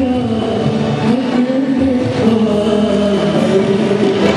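Live band music of an old Hindi film song, with long held notes that bend in pitch.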